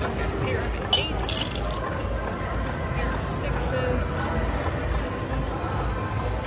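Casino floor ambience: background chatter and music, with a few sharp clinks about a second in and lighter ones a couple of seconds later.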